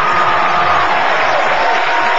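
Studio audience cheering and applauding in a steady, dense roar.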